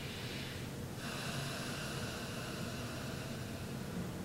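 A person breathing slowly through the nose: one soft breath fades out just before a second in, and the next, a little louder, begins about a second in and fades away over the following two seconds, over a steady low room hum.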